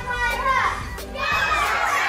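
A group of children's voices: a sung line trails off, and about a second in the children break into excited shouting and chatter all together.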